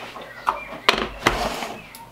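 Spice containers handled and set down on a kitchen worktop: a sharp click just under a second in, followed by a soft thump.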